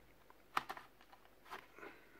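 A few faint clicks and light rubbing as a laptop's DVD drive is pulled out of its bay in the plastic case, the clearest click about half a second in.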